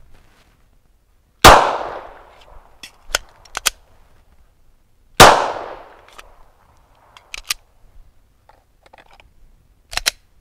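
Two 9mm pistol shots from a Glock 17, about four seconds apart, each ringing out with an echo. Between them come a few sharp metallic clicks of the magazine reload.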